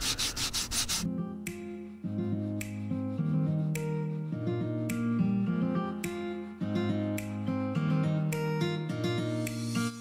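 Hand sanding with 120-grit paper on a hard block, quick back-and-forth strokes about six a second, for roughly the first second. Then background music of plucked, guitar-like notes over a slow bass line.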